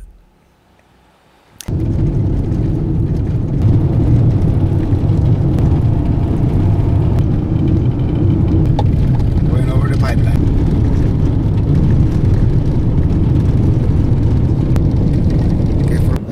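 Quiet for about the first second and a half, then the steady, loud rumble of an SUV driving on a gravel highway, heard from inside the moving car.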